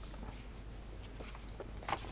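Faint rustling of a sheet of paper being pressed and rubbed by hand onto a painted metal printing block, with a short sharp rustle near the end as the sheet is peeled off the block.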